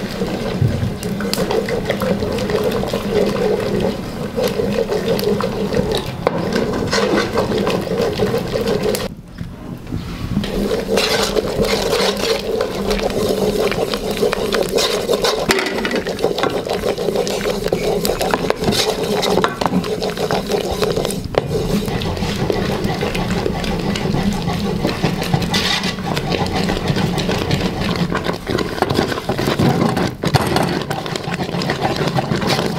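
Wooden spoon stirring and scraping a simmering flour-and-water mixture in an aluminium pot, with many short knocks and scrapes against the pot, over a steady low hum. The sound drops briefly about nine seconds in.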